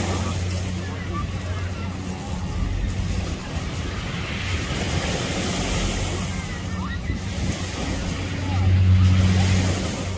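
Beach ambience: waves washing ashore and faint background voices of people, under a low steady hum that fades after the first few seconds and swells again near the end.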